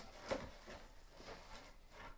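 Faint rustling and light clicks of a wig being lifted out of its clear plastic tray and cardboard packaging, with one slightly louder tick about a third of a second in.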